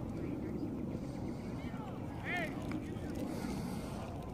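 Wind rumbling on the microphone across an open playing field, with faint distant voices and one short shout about two seconds in.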